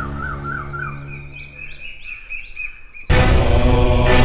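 Birds chirping in quick, repeated rising notes over a fading low held music tone, then a loud music cue cuts in abruptly about three seconds in.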